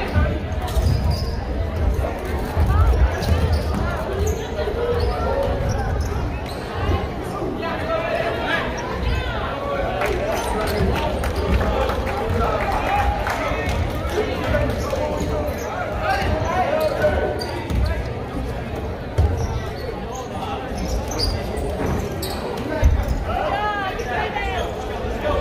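Basketball bouncing on a hardwood gym floor during play, with spectators' voices and shouts around it in a large gym.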